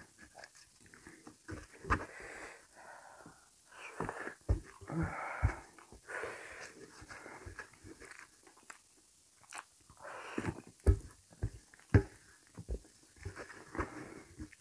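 Close-up eating sounds from a person eating rice and curry by hand: chewing and wet mouth noises, breathy hissing breaths, and sharp clicks and taps as fingers scrape food off a steel plate, the loudest clicks coming about two-thirds of the way in.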